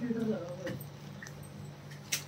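A person's drawn-out voice trails off in the first half second. A quiet stretch follows with a steady low hum and a few faint clicks.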